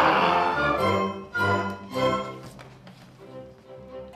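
Theatre orchestra with strings playing the instrumental link between verses of a comic-opera song: the chorus's last sung chord fades in the first half-second, then two accented chords about one and a half and two seconds in, softening toward the end.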